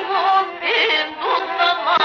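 Pontic Greek folk music: a high, heavily ornamented melody with quick trills and short pitch glides, in phrases of about half a second.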